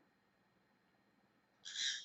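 Near silence for most of the moment, then a brief, soft hiss with no clear pitch just before the end.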